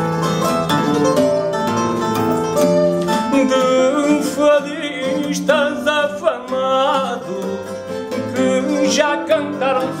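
Portuguese guitar (guitarra portuguesa) playing a plucked melodic passage over a fado viola (classical guitar) accompaniment, the interlude between sung lines of a fado. A man's singing voice comes in briefly in the middle and again near the end.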